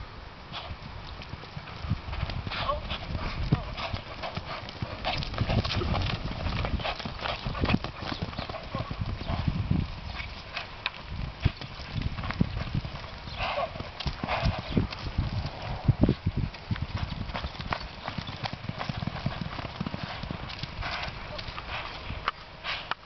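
A horse galloping a barrel pattern on arena dirt, its hoofbeats thudding.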